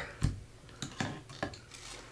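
Pliers pushing copper ground wires into a plastic electrical box: several light clicks and knocks of metal on wire and plastic, spread through two seconds.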